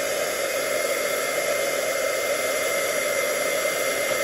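Stampin' Up! heat tool (a craft heat gun) running steadily, blowing hot air to dry damp, ink-stamped watercolor paper: an even rushing hum with a faint high whine.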